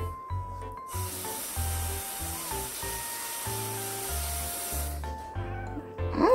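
Light, cute background music with a stepping melody and a repeating bass beat. From about one second in until about five seconds, a steady rustling hiss lies over it.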